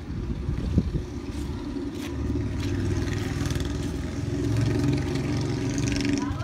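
A motor vehicle's engine running nearby, with a low rumble that grows louder from about two seconds in. There is a single sharp knock just under a second in.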